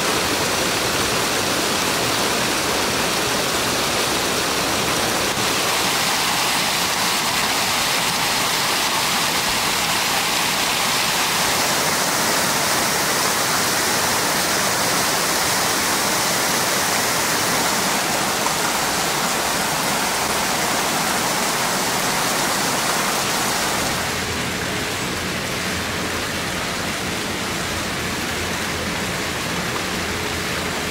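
Creek water pouring over stepped rock ledges in small falls and cascades: a steady rushing and splashing. About 24 seconds in it shifts to a slightly quieter, duller rush with more low rumble, as a different cascade takes over.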